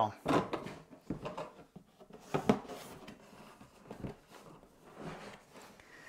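Wax-lined cardboard lid being lowered and slid down over a cardboard box, with soft scrapes and several light knocks of cardboard on cardboard, the sharpest about halfway through.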